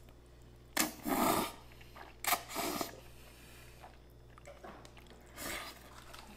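People slurping cold noodles: two long, noisy slurps about one and two and a half seconds in, and a shorter one near the end.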